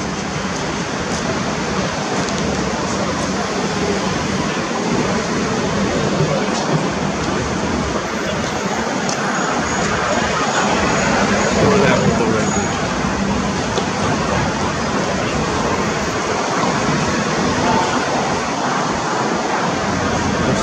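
Steady city street noise: a continuous hiss and rumble of traffic, with faint voices mixed in.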